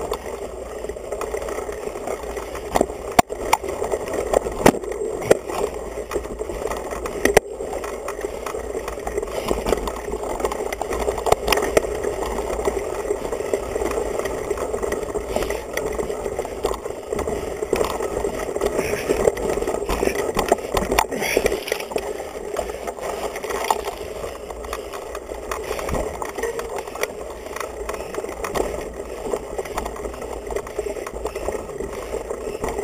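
Mountain bike rolling over a dirt trail, its frame noise carried straight through a handlebar camera mount: a steady rumble with frequent sharp knocks and rattles from bumps, several loud ones in the first twelve seconds.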